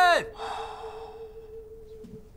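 The end of a man's long drawn-out court call of 'xuan' ('summon him'), which drops in pitch and cuts off just after the start. A fainter echoing tail follows for about a second.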